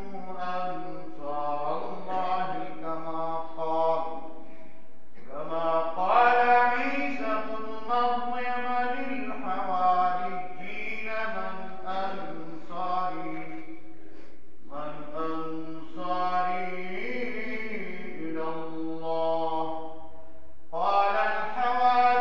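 An imam's solo Arabic recitation in a melodic chant: a man's voice drawing out long held phrases, broken by three short pauses for breath.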